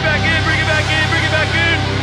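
Metal band playing live, loud: a dense, distorted low drone of guitars and bass under a repeating high figure of short arching notes, about four or five a second, which stops shortly before the end.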